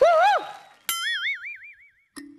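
A cartoon 'boing' sound effect: a sharp twang about a second in, then a warbling tone that wavers up and down and fades away. Just before it, at the very start, a short swooping pitched sound rises and falls.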